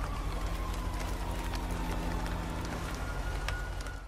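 Rain sound effect: a steady hiss of rain with scattered small drops, over a low hum and a faint tone that slowly falls in pitch.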